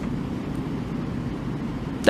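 Steady room noise in a pause of speech: a low, even rumble with a hiss above it and no distinct events.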